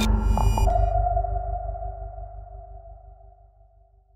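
Electronic logo sting: a deep bass hit with ringing synthesized tones and a bright high shimmer in the first second, the whole sound slowly fading out to silence by near the end.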